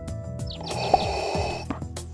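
Background music, with one breath about a second long, starting a little after half a second in: a breath sound effect through a respirator mask.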